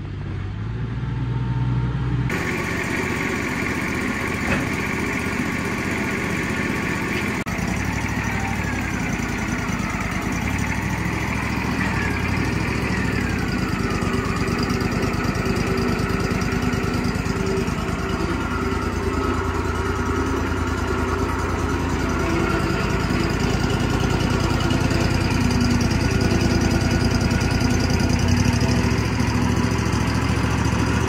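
Wood-Mizer hydraulic band sawmill's engine running steadily, with a few brief gliding whines about ten to fifteen seconds in. The log is on the bed but not yet being cut.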